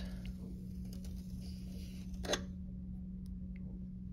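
Faint scrape of a knife drawn through a soft clay slab along a wooden straightedge, with one light click a little over two seconds in, over a steady low hum.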